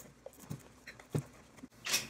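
Packing tape being cut on a cardboard shoebox: a few soft, separate taps and clicks of the blade and box, the loudest a little past the middle.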